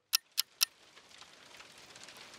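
A clock ticking, about four sharp ticks a second, stops about half a second in. A faint hiss of rain then fades in and slowly grows.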